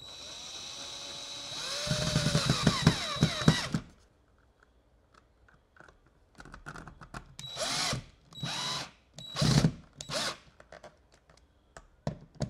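Cordless drill driving screws into the wall to mount a thermostat base: a steady motor whine that grows louder and drops in pitch as the screw bites and seats, stopping about four seconds in. After a pause come several short trigger pulses as the next screw is driven.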